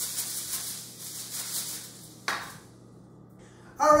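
A foil-lined metal baking tray being handled with a light rustle, then set down on a stone countertop with a single knock a little over two seconds in.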